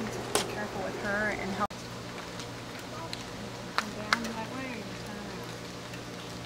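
Faint voices with a few sharp clicks or knocks over a steady low hum.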